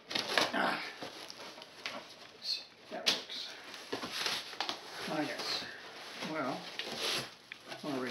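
A razor blade slitting the packing tape on a cardboard box, then the cardboard flaps pulled open and scraping and rustling against each other, with a sharp snap about three seconds in.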